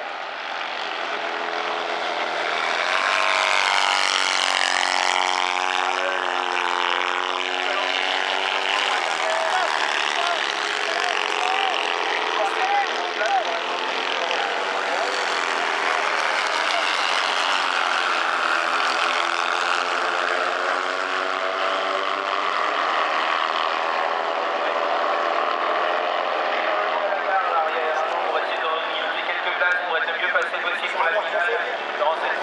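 Several autocross racing engines at high revs, their pitch rising and falling as they accelerate and pass on the dirt track, loudest about four seconds in.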